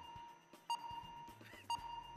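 Game-show countdown timer cue: a steady high tone with a short tick once a second, two ticks about a second apart.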